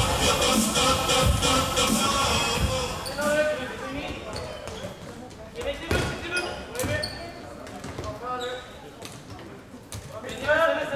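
Hall music with a beat plays for about the first three seconds and then drops away, leaving floorball play in a large hall: sharp knocks of sticks striking the plastic ball a few times, and players calling out.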